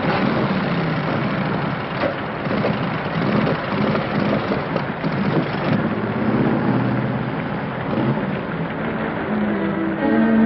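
Steady rain falling, a dense even hiss, with faint wavering low tones beneath it.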